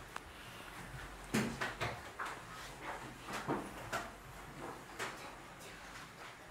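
Quiet room with a string of short, soft knocks and clatters at irregular gaps of about half a second to a second.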